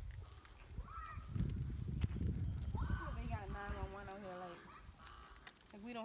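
A long vocal call a few seconds in, pitched and falling in short steps like a whinny, over a low rumble of wind or handling on the microphone.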